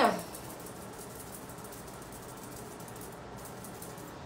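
A brief spoken "yeah" at the very start, then only a steady low hiss of room tone with no distinct event.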